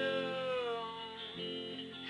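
Strummed guitar chords with a man's voice holding the end of a sung line, the note sliding down and fading about two-thirds of the way through while the guitar rings on.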